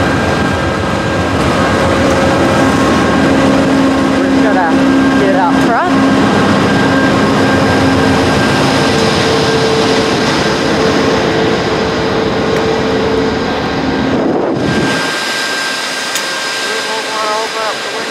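VIA Rail GE P42DC diesel locomotive running while the train stands at the platform: a loud, steady engine drone with a held whine over it. About 15 seconds in, the low rumble falls away and the sound grows a little quieter.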